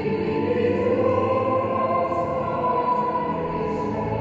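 A congregation singing a hymn together in long held notes.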